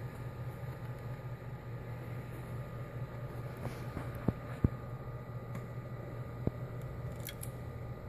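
Steady low hum of a bench power supply and cooling fan, with three small sharp clicks: two close together a little after four seconds in, and one more about six and a half seconds in.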